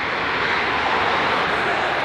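A passing motor vehicle: a rush of road and engine noise that swells and then holds, with no clear engine note.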